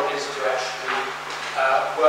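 Speech only: a man talking into a microphone.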